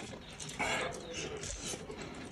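A large crusty loaf rustling and crackling as it is handled and lifted, in two short bursts.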